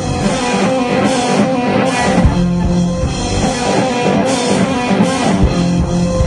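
Live rock band playing: electric guitars over a drum kit, loud and steady, with cymbal crashes roughly once a second.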